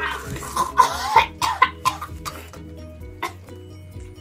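Girls coughing and spluttering as Diet Coke foams up in their mouths from the Mentos: a string of sharp coughs that thins out after about two seconds, over background music.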